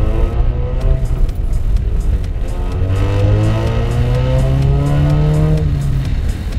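2015 Ford Mustang's turbocharged 2.3-litre EcoBoost four-cylinder accelerating hard through a Borla downpipe and ATAK cat-back exhaust, its pitch climbing twice, the second pull long, then dropping off near the end. Background music with a light beat runs underneath.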